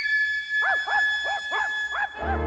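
A quick string of short yips from a cartoon dog, each one rising and falling in pitch, about three a second, starting about half a second in, over a high held musical note.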